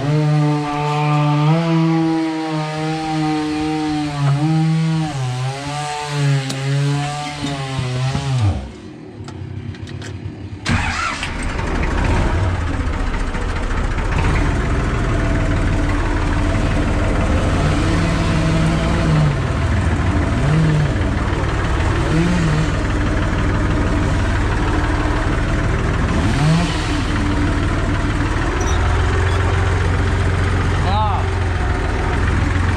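A two-stroke chainsaw runs with its pitch rising and falling, then winds down and stops about eight seconds in. A couple of seconds later the IMT 539 tractor's three-cylinder diesel is started and keeps running steadily.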